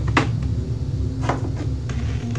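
Two sharp knocks about a second apart, from objects being handled and bumped close to the microphone, over a steady low hum.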